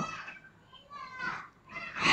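Faint, higher-pitched child's voice in the background about a second in, between the syllables of a woman reading; the end of her spoken syllable fades out at the start.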